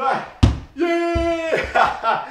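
A single thud about half a second in as the thrown ball lands on the carpeted floor, followed by a man's drawn-out vocal exclamation with a couple of softer thumps under it.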